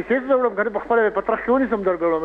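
A caller's voice speaking over a telephone line, sounding narrow and thin.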